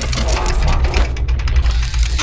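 Sound-designed logo sting: fast, rattling, mechanical-sounding effects over a steady deep rumble.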